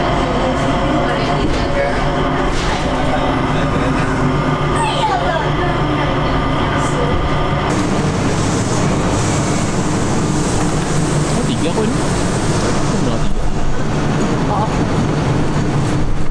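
Airport Skytrain people mover running, a steady hum and whine with faint passenger voices. About halfway through it gives way to the busy hubbub of an airport terminal concourse, with travellers' voices.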